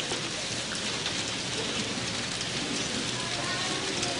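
A steady, even hiss like falling rain, with no voice over it.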